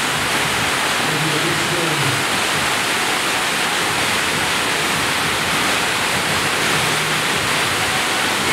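Loud, steady rush of water from a FlowRider sheet-wave surf machine, its thin sheet of water pumped at speed up the padded ride surface.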